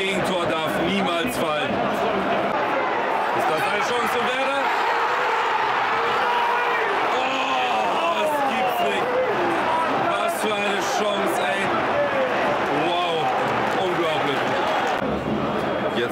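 Football stadium crowd singing and chanting, many voices at once, loud and steady.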